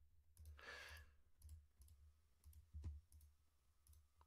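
Near silence with a few faint computer mouse clicks as dropdown options are picked, and a soft breath about half a second in.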